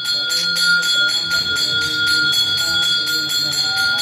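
Brass puja hand bell rung rapidly and without pause, its ringing holding a steady high tone through the quick, even strokes.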